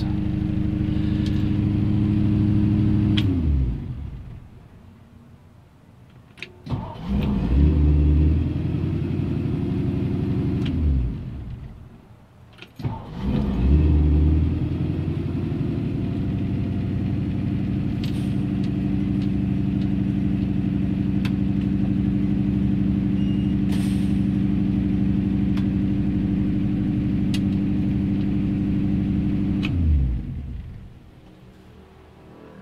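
The 1962 Mercury Monterey's FE 352 V8 idles a little rough, heard from inside the cabin, and is shut off about three seconds in. It is cranked and catches with a burst of revving, runs a few seconds and dies, then is cranked again, catches and idles steadily until it is switched off at the end.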